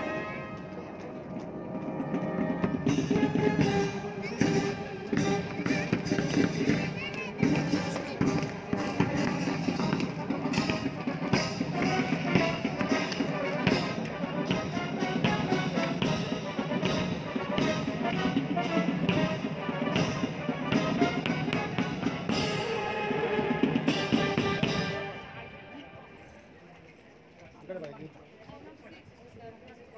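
Military brass band with drums playing live in the open, growing loud about three seconds in and ending about 25 seconds in.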